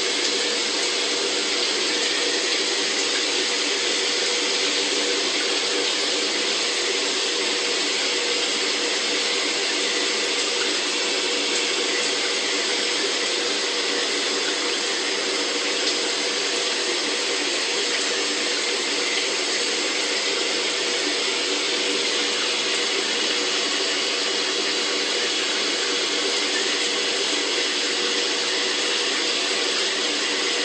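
Shower water running steadily, an even hiss that never changes, with a faint steady hum beneath it.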